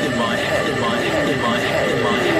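Psytrance electronic music: a synth line of repeated falling pitch glides, two or three a second, over a steady held high tone.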